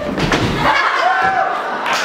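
A person dropping onto a stage floor with a thud, followed by a voice crying out.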